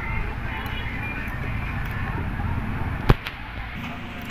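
Close handling noise of hands working a plastic junction box and circuit board near the microphone, with one sharp click about three seconds in as the microSD card is pushed into the piso wifi board's slot.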